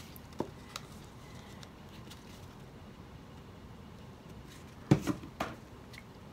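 Quiet room with a few faint clicks, then a sharp knock about five seconds in and a smaller one just after, from objects being handled and set down on a work table.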